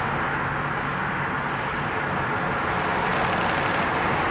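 Steady, even outdoor roar of distant engine noise with a faint low hum underneath; a high fluttering hiss joins near the end.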